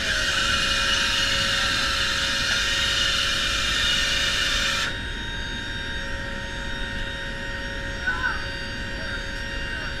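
Cabin noise inside a C-130J cargo hold in flight: the steady drone of the turboprop engines with a few constant whining tones over it. A loud rushing hiss covers the first five seconds and then cuts off suddenly.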